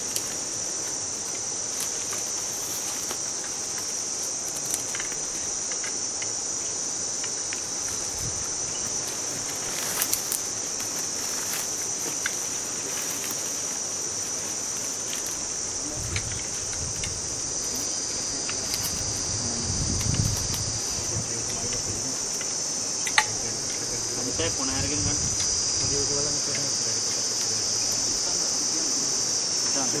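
A steady, high-pitched insect chorus, a continuous shrill drone, with a few scattered sharp clicks or knocks, the loudest about 23 seconds in, and some low rumbling in the middle.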